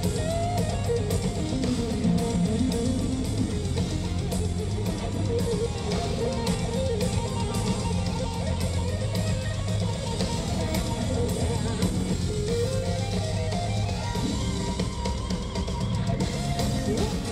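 A live hard rock band played loud through an arena PA: an electric guitar plays lead lines with bent notes over drum kit and bass.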